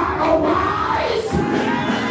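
A man shouting into an amplified microphone, with crowd voices and music behind him.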